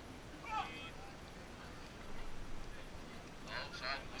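Raised human voices over a steady outdoor wind-and-water hiss: a short call about half a second in, then several loud shouts near the end.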